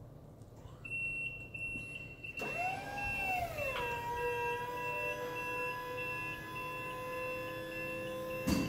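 Skyjack SJ4626 electric scissor lift raising its platform: a high, steady alarm tone comes on about a second in, then the electric hydraulic pump motor starts with a whine that rises, drops back and settles into a steady hum as the scissor stack extends.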